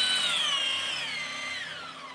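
Stand mixer's motor whining as it beats meringue, then switched off: the whine slides down in pitch and fades as the beater winds down over about a second and a half.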